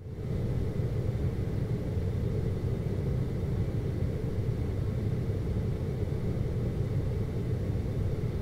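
Steady low rumbling background noise with no change in level, as an ambience under the animation.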